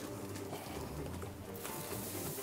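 Quiet background music; about a second and a half in, a steady hiss of dry cereal feed (wheat, barley, oats and bran) pouring from a galvanised metal bucket into a feeding trough.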